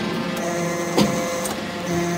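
Hydraulic scrap-metal briquetting press running: a steady machine hum from its hydraulic power unit, with a sharp metallic knock about a second in.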